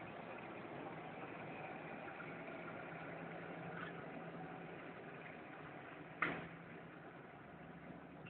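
A single sharp clack of a penny skateboard striking the ground about six seconds in, over a steady low rumble.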